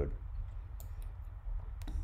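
A few sharp clicks from working a computer, one about a second in and another pair near the end, over a low steady hum.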